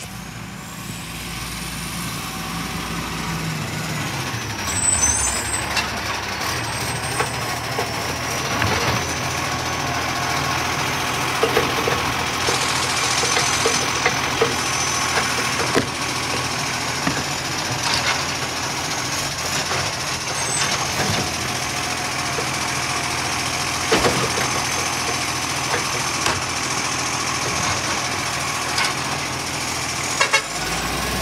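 Iveco side-loader garbage truck's diesel engine running as it pulls up close, growing louder, with a steady high whine from about twelve seconds in and scattered clanks and knocks. A brief air hiss comes about twelve seconds in.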